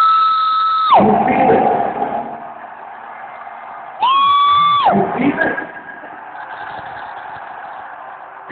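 Rock concert crowd shouting and cheering, with two long, loud, piercing whistles close to the microphone: one at the start lasting about a second, another about four seconds in, each sliding down in pitch as it stops.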